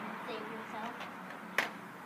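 A single sharp knock of a skateboard against concrete about one and a half seconds in, after a faint voice.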